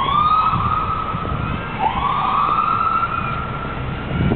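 Emergency vehicle siren wailing: its pitch sweeps up and holds high twice, once at the start and again about two seconds in.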